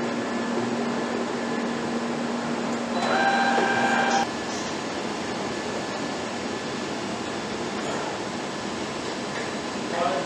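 Steady machinery and ventilation hum in an assembly workshop. A low hum runs for the first four seconds, and a louder machine whine joins about three seconds in before cutting off suddenly.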